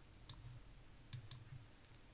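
Near silence: faint room tone with a few soft, short clicks, one near the start and a couple about a second in.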